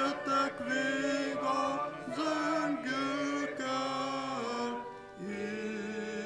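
A slow hymn sung by the congregation with keyboard accompaniment, in long held notes that move by steps, with a short break between phrases about five seconds in.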